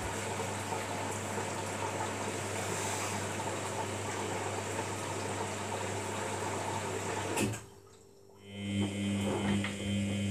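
Samsung front-loading washing machine tumbling its load during a wash cycle: water sloshing in the drum over a low, steady motor hum. A little past halfway there is a click, the sound cuts out abruptly for about a second, then a steadier hum returns.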